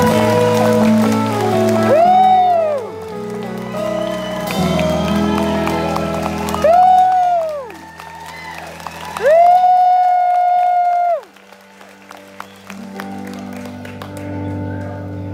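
Live country band finishing a song with held closing chords while the audience claps and cheers. Three high gliding notes rise and fall over the band, the last one held for about two seconds. After a short lull near the end, soft chords start again.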